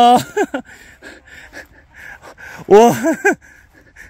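Golfers' wordless exclamations of approval at a shot: a loud drawn-out "wow" trailing off at the start and another short vocal cry about three seconds in.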